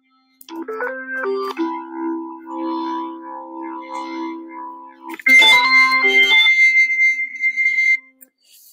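Native Instruments Vintage Organs software tonewheel organ, jazz preset, playing held chords that start about half a second in. About five seconds in, a new chord sounds brighter, with a high tone held over it, as the drawbar settings are changed.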